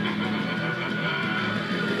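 Movie chase soundtrack: music mixed with the engine of a speeding heavy truck, played back through a TV.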